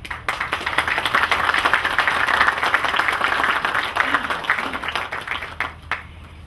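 Audience applauding for about six seconds, starting suddenly and tapering off near the end.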